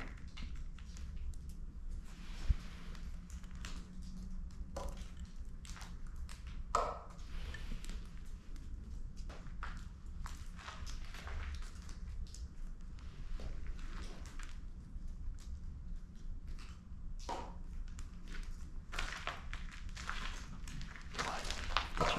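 Slow footsteps over a rubble-strewn floor in a quiet, echoing basement, with scattered small taps and ticks of dripping water. One sharp low thump about two and a half seconds in is the loudest sound.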